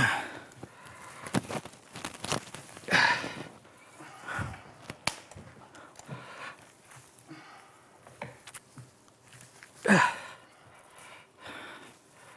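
Pine foliage rustling and branches being handled as two people bend and wire a large ponderosa pine, with heavy breathing and a couple of short sighs of effort, loudest near the start and about ten seconds in. A few sharp clicks come in between.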